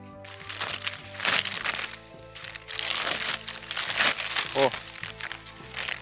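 Plastic bag crinkling and crackling in irregular strokes as it is pulled open by hand from the rooted air layer on a cinnamon branch, with background music.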